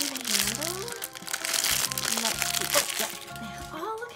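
A thin plastic toy wrapper being crumpled and torn open by hands, with dense crinkling that thins out near the end, over background music.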